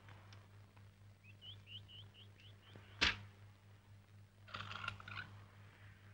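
Quiet room with a steady low hum. A quick run of about seven short high chirps comes first, then a single sharp knock about three seconds in, the loudest sound. A brief rustling scrape follows near the end.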